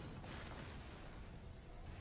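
Very quiet, steady background noise with no distinct event in it.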